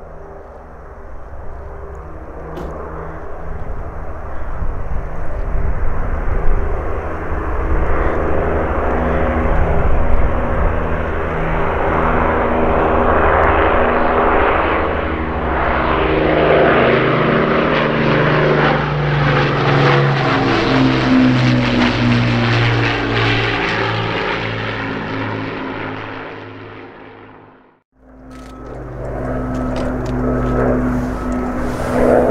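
Avro Lancaster's four Rolls-Royce Merlin V12 piston engines on a low pass: the drone grows louder as the bomber approaches, drops in pitch as it goes overhead, then fades away. It cuts off abruptly near the end and resumes more distantly.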